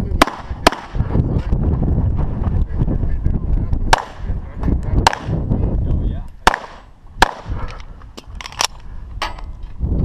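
CZ SP-01 9mm pistol fired about nine or ten times at an uneven pace. Some shots come half a second apart, some with gaps of a second or more while the shooter moves between targets, and there is a quick pair near the end. A low rumbling noise fills the gaps between shots for the first six seconds or so.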